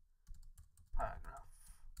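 Typing on a computer keyboard: a run of quick key clicks as a word is typed.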